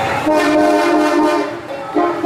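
A horn sounding in a long, steady blast that breaks off about a second and a half in, then sounds again at the very end.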